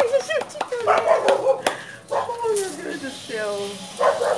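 Women laughing and exchanging short excited exclamations, in bursts rising and falling in pitch.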